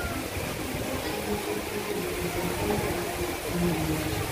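Steady rushing noise from a circling amusement ride, with faint voices in the background.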